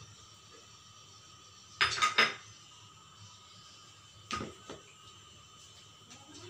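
Kitchen utensils knocking and clinking on hard surfaces: three quick knocks about two seconds in, then two more at about four and a half seconds.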